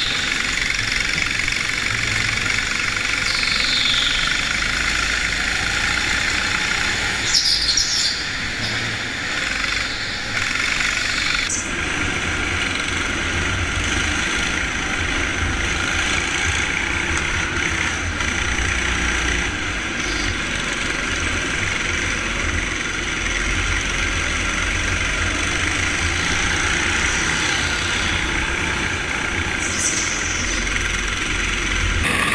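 Go-kart engine running at racing speed, heard from an onboard camera, with a few brief high squeals in the first eight seconds. The sound shifts in character about eleven seconds in.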